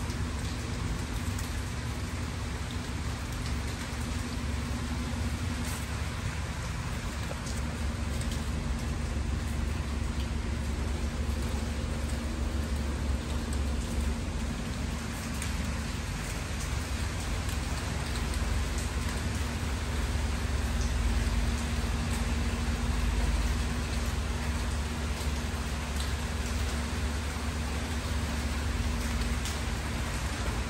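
Steady rain falling, with scattered drop ticks over a low rumble.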